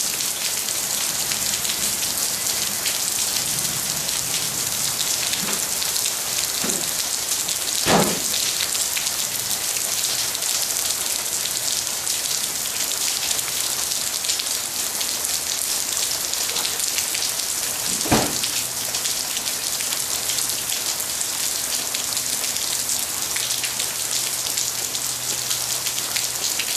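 Heavy rain falling steadily, a dense, even hiss of rain on a puddled driveway and grass. Two sharper, louder taps stand out, about 8 and 18 seconds in.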